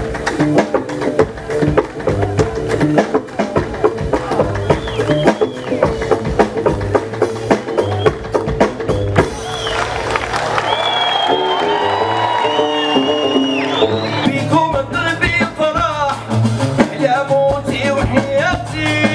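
Live Moroccan Gnawa-fusion band music over a PA: dense, fast drum and percussion strokes under sung vocals, with a stringed instrument. High wavering, gliding tones stand out in the middle.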